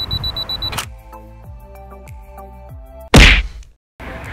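A camera self-timer beeping rapidly in one high tone, ending in a click under a second in; then a short musical sting with falling notes, ending in a very loud whoosh about three seconds in.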